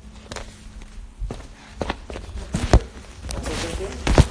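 Scattered footsteps and knocks on a hard studio floor, mixed with handling bumps from the phone being moved about; the loudest knock comes near the end.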